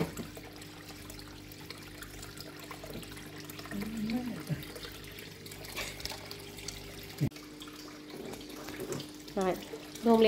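Water sloshing and trickling in a small fish tank as hands work under the surface, re-fitting a sponge onto a submersible filter. A steady low hum runs underneath, and there is a single sharp click a little after 7 seconds.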